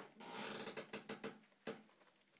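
Italian Greyhound puppy yipping and whining in a quick run of short cries, followed by a single sharp click.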